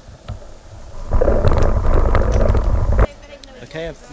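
Wind rushing hard over the microphone while riding a bicycle along a lane. It starts about a second in and cuts off suddenly about two seconds later, and a man's voice then begins.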